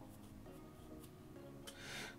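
Faint background music, with the soft scrape of a silicone spatula stirring sauce in a small cup.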